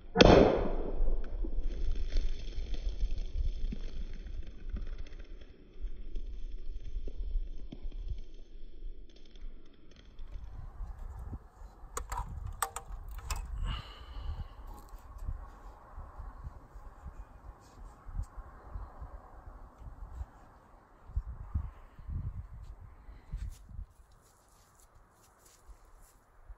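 A thrown steel hammer-axe strikes the wooden target log with one loud, sharp hit that rings briefly, spearing an aluminium drink can against the wood. After it come fainter sounds: a few sharp clicks about halfway through and a low rumble underneath.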